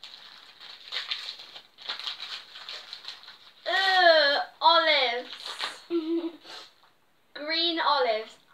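Wrapping paper crinkling and tearing as a parcel is unwrapped by hand. About halfway through, a girl's voice sounds twice, each sound long and falling in pitch.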